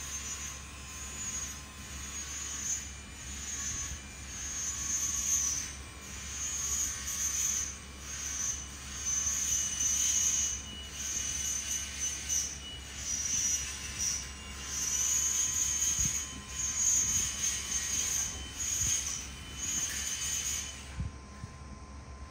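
A high, hissing squeal that swells and fades every second or two, over a steady low hum.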